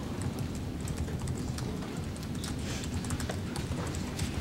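Quiet room tone: a low steady rumble with scattered light clicks and taps.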